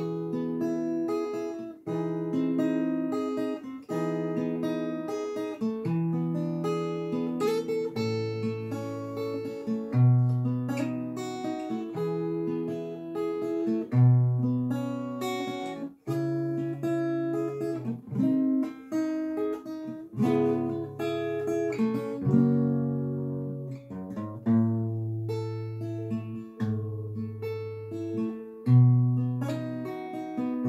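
Acoustic guitar, capoed at the second fret, playing a slow hymn's chord progression with no voice, the chord and bass note changing every second or two.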